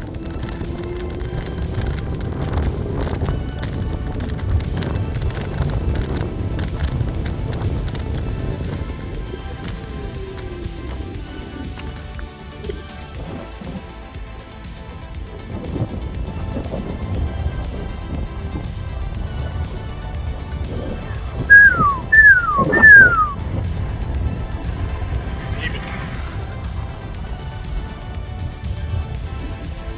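Background music over a steady low wind rumble on the microphone. About three-quarters of the way through come three short, loud whistles, each falling in pitch.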